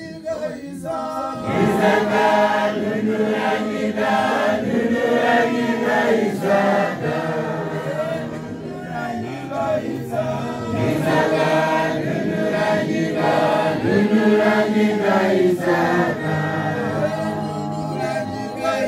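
A church choir of men's and women's voices singing a hymn a cappella, with no instruments. The singing dips briefly at the start and comes back in full about a second and a half in.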